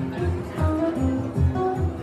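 Two acoustic guitars playing an instrumental passage, strummed and picked in a steady rhythm with a regular pulse of low bass notes.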